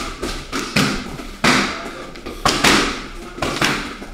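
A series of heavy thuds, roughly one a second, each a sharp strike with a short tail.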